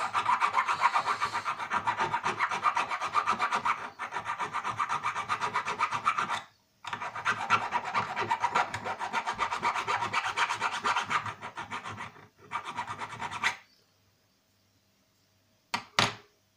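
Small hand file rasping along the edge of a thin pure-tin sheet pendant in quick, rapid strokes, taking off the sharp cut edges. The filing pauses briefly about six seconds in and stops a couple of seconds before the end.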